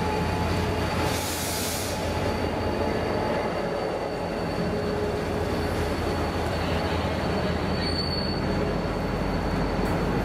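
V/Line A-class diesel locomotive A66 and its passenger carriages rolling past slowly as the train draws into the platform, with a steady high-pitched wheel squeal over the rumble. A short hiss comes about a second in.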